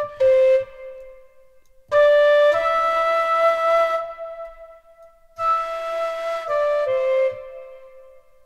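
Sampled dongxiao, a Chinese end-blown bamboo flute, from Ample Sound's Ample China Dongxiao virtual instrument. It plays a few sustained notes: a short falling two-note phrase, then a phrase that rises to a long held note, then a quieter run of falling notes. The delay effect is on, and faint repeats trail after the notes.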